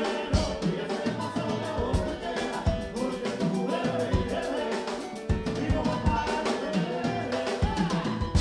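Cuban salsa band playing live: a man singing over drum kit, keyboard and bass, with a busy, steady beat of short percussion strikes.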